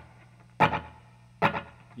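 Electric guitar in open G tuning, played on the bridge pickup with a little overdrive and a single-repeat slapback echo, struck in two short chord stabs a little under a second apart.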